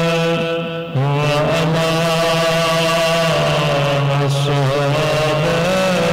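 Chanted recitation of a salaam by a man's voice, in long held notes that waver in pitch. There is a brief break in the sound about a second in.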